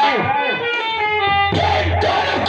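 Amplified stage music of a nautanki folk-theatre show: a man's voice sings through a microphone and loudspeakers with instrumental accompaniment. He holds one long steady note from about half a second in to about a second and a half in.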